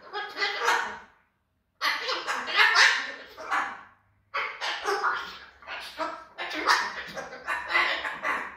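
Pet white cockatoo calling angrily in quick runs of short, broken calls, in three bouts with brief pauses just after a second in and about four seconds in.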